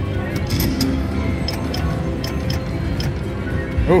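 Slot machine's electronic game music with steady held tones and a run of short chiming clicks as a new spin plays.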